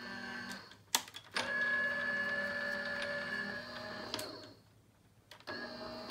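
Electric die-cutting machine running as it feeds a cutting plate sandwich through: a steady motor hum that stops with a couple of clicks about a second in, runs steadily for about three seconds, stops, and starts again near the end.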